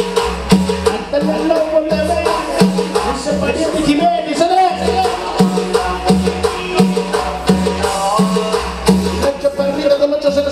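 Loud live Latin dance music from a band, with a steady bass and percussion beat and a wavering melody line over it.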